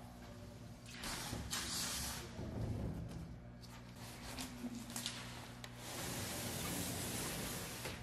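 A large sheet of OSB (wafer board) being handled and slid onto a CNC router's bed, giving a scraping hiss about a second in and again through the last two seconds, with a few light knocks in between. A steady low hum runs underneath.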